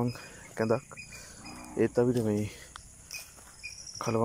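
A person speaking in a few short phrases with pauses between them, over a faint high chirring of insects.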